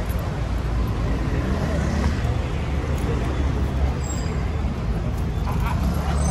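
Steady low rumble of street traffic, with voices talking in the background.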